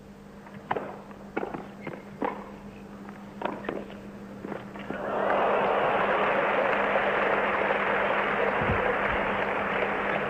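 A tennis rally: sharp racket-on-ball strikes about a second apart. About halfway through, a crowd breaks into steady applause that greets the end of the point.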